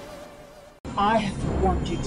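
Intro music fading out, then an abrupt cut about a second in to a film scene with a woman's high, wavering voice.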